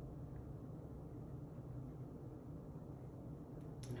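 Faint steady room noise with a low hum and no distinct event.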